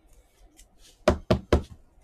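A stack of trading cards knocked against a tabletop three times in quick succession, about a quarter second apart, after some faint sliding and rustling of cards.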